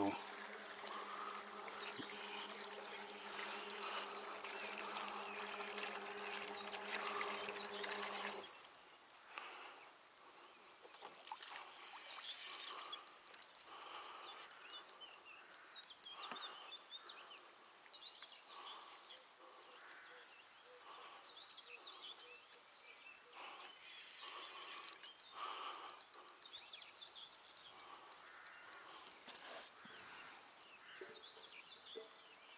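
Faint pondside outdoor ambience: a steady low buzz that cuts off about eight seconds in, then scattered short chirps and calls.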